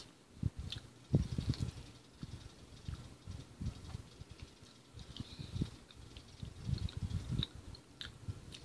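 Quiet eating sounds: a fork scraping and tapping on a plastic divided plate while scooping up MRE hash browns, with soft, irregular chewing.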